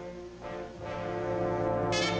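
Orchestral cartoon score: brass holding a sustained chord that swells steadily louder, with a sharp percussive hit near the end.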